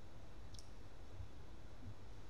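Pause in a lecture recording: faint room tone with a steady low hum, broken once about half a second in by a single faint, short click.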